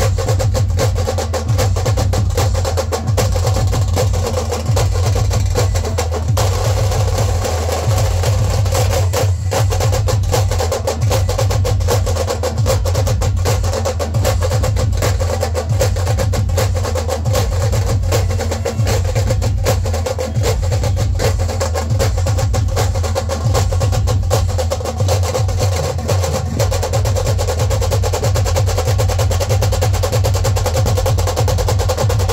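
Dhol-tasha ensemble playing loud, fast, unbroken drumming: dense rapid stick strokes on the tashas over the deep beat of the dhols, with a sustained low bass underneath.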